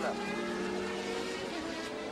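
Engines of a pack of 1988 Formula One cars pulling away from a race start, blending into a steady drone of several engine notes.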